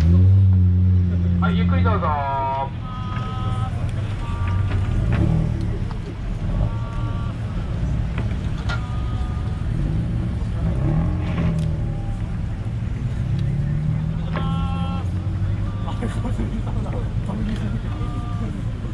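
Custom cars pulling out and driving past slowly, engines and exhausts running with a deep steady drone that is loudest in the first two seconds, over a continuing low traffic rumble. People's voices and calls come in over it now and then.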